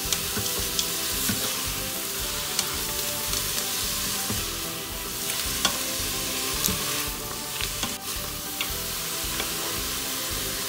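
Chopped fenugreek leaves and onions sizzling in the hot stainless-steel inner pot of an Instant Pot on sauté mode, stirred with a spatula that scrapes and clicks against the pot now and then.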